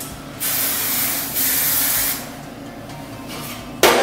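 Aerosol hairspray can spraying in one continuous hiss of about a second and a half, getting louder partway through. A short, sharp sound comes near the end.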